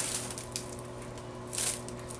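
Packaging rustling and crinkling as hands rummage through a haul of items, with a louder crinkle about one and a half seconds in.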